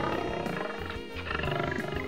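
A lion roaring and growling over soft background music.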